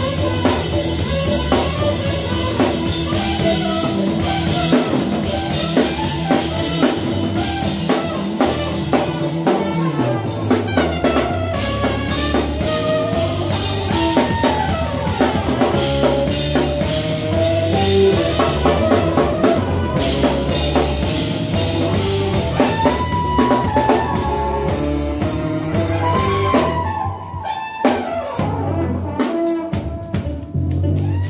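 Live funk band playing: a steady drum-kit groove with electric bass, keyboards and a trumpet and saxophone carrying the melody. About three seconds before the end the drums drop out briefly and the music gets quieter.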